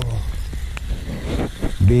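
Rain falling on creek water and a kayak, with a low rumble from the rod and camera being handled while a fish is hooked on a jig. There is a faint click about three-quarters of a second in.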